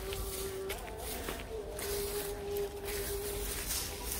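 Rustling and footsteps in dry grass and weeds, with a faint steady hum underneath that drops out briefly partway through.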